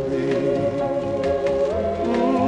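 A beat ballad played from a 1960s 45 rpm single: backing voices hold long notes over bass and drums, stepping up in pitch near the end.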